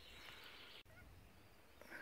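Near silence: faint outdoor background hiss, broken by an abrupt cut in the sound about a second in.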